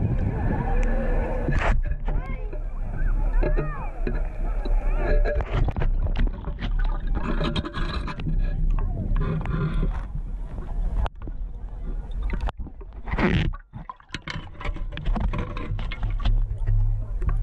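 Lake water sloshing and splashing in and around a long-handled perforated metal-detecting scoop as it is shaken and sifted underwater, with knocks of gravel and metal against the scoop.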